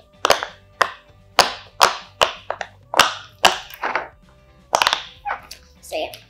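Silicone pop-it fidget toy, the rainbow Among Us-shaped one, its bubbles pressed in one after another on the soft side: a dozen or so sharp pops, about two a second.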